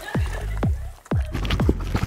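Background music with five or six quick cartoon 'boing' sound effects, each a fast falling sweep in pitch, laid over a foot bouncing on a jiggly water-filled balloon.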